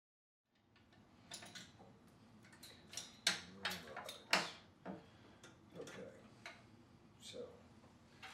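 Sharp clicks and taps of a light fixture's housing and small parts being handled during disassembly, starting about half a second in.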